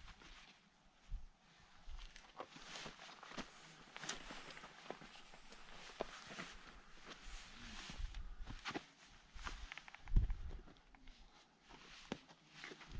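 Faint scrapes and taps of hands and boots on rock as climbers scramble up a steep rock face. A few low thumps come through, the loudest about ten seconds in.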